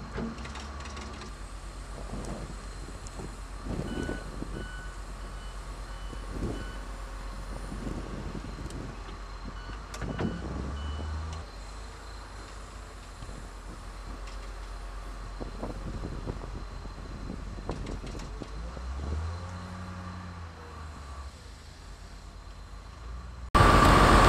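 Heavy diesel equipment running steadily with a low rumble while a wheel loader fills a sand truck's bed. A reversing alarm beeps in two short runs, and there are a few dull thuds as bucketloads of sand drop into the bed; the loudest comes about ten seconds in.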